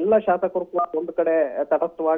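A man's voice reporting over a telephone line, the sound thin and narrow as on a phone call.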